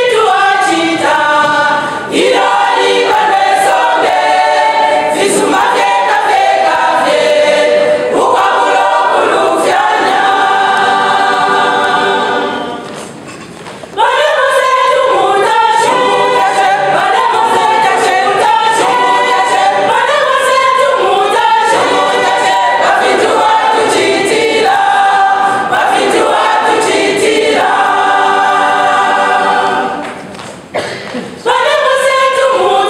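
A women's church choir singing gospel, unaccompanied. The singing drops away briefly a little before halfway through, then comes back in suddenly at full strength.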